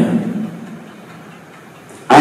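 A man's voice over a microphone, held on steady pitches, ends a phrase and dies away in the first half second; then a pause of faint steady background noise until the voice starts again sharply just at the end.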